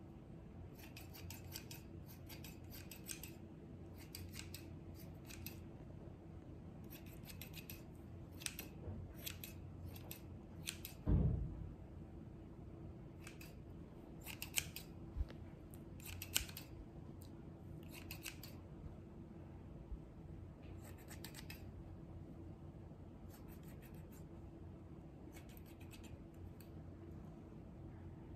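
Haircutting scissors snipping hair close to the microphone, in runs of several quick snips with short pauses between, over a steady low hum. A single dull thump sounds about eleven seconds in.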